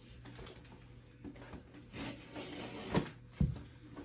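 Faint handling and rustling of a cardboard gift box, with two dull thumps close together about three seconds in.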